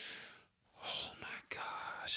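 A man whispering under his breath in exasperation: a few breathy, unvoiced bursts of speech.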